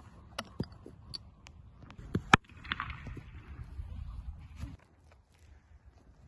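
Several sharp knocks of a cricket bat and ball, light ones first and one loud crack just over two seconds in, followed by about two seconds of soft rustling.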